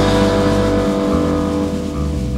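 Rock band holding a sustained chord, the notes ringing steadily over a cymbal crash that dies away. Beneath them the low bass note changes about a second in and again near the end.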